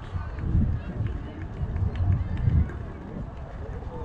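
Outdoor ballfield ambience: faint voices calling out across the field over irregular low rumbling surges, like wind buffeting the microphone.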